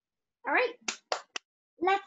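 Speech: a few short spoken syllables with sharp hissing consonants, starting about half a second in and resuming near the end.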